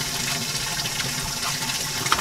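Steady rush of running water, with a low steady hum underneath.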